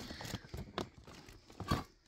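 Rustling and crinkling from a clear plastic storage bin and its contents being handled, with a couple of sharper knocks.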